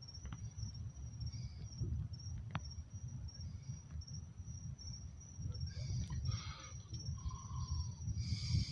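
Night insects trilling in one steady high tone over a low, uneven rumble.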